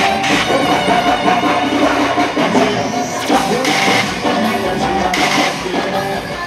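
Loud live band music from a concert stage: drum kit and electric guitar with a beat, and a singer over the band.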